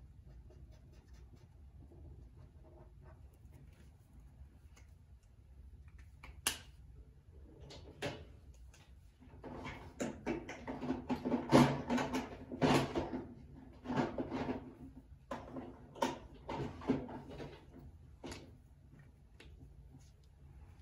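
Markers being handled and sorted through, as one marker is put away and another picked out: a sharp click, then a run of irregular clattering knocks and rustles that fades out near the end.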